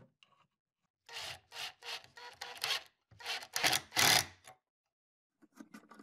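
A drill driving a pocket-hole screw at an angle into a wooden board, the screw grinding into the wood in two bursts, the first about a second in and a louder one around three seconds in. A few light clicks follow near the end.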